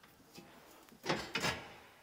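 A metal floor access panel being lifted off its studs and slid out of its opening, giving a short scraping rub about a second in.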